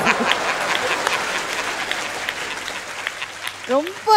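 Audience applause, a steady patter of many hands clapping that gradually dies away, until a woman starts speaking again near the end.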